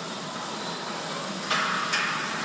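Steady hiss of room noise, such as ventilation. About one and a half seconds in, a louder brief rustling noise starts.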